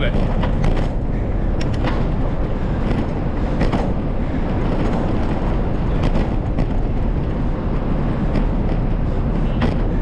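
Steady wind rumble on the microphone of a moving bicycle's camera, mixed with tyre and road noise, with a few sharp clicks and knocks scattered through it.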